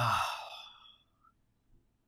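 A man's voiced "oh" falling in pitch and trailing off into a long breathy sigh that fades out about a second in.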